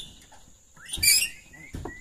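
Birds chirping in short rising notes, with a loud hissing burst about a second in and a single knock near the end.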